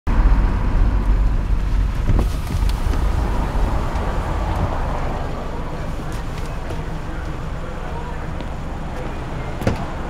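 Low rumble of car and traffic noise heard from inside a car's cabin, loudest at first and easing off. A single sharp knock comes near the end.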